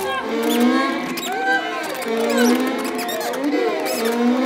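A soprano sings wordless, sliding vocal lines. Many high, squeaky, gliding chirps and sharp clicks from the experimental electronic score are layered over her.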